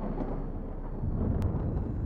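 Deep, low storm rumble, swelling a little about a second in.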